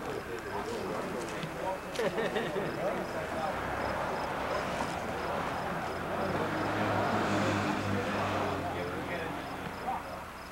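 Indistinct chatter of several people talking at once outdoors, with no clear words. A low steady hum comes in during the second half.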